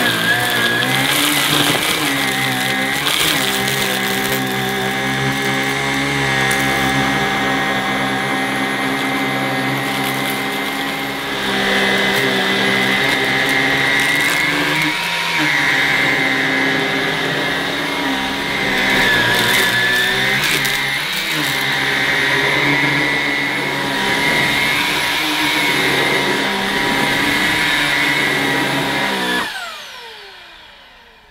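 Halo Capsule cordless vacuum cleaner's brushless motor running with a steady whine while its floor head is pushed back and forth over dirt on carpet, the pitch dipping briefly a few times. Near the end it is switched off and the whine falls away.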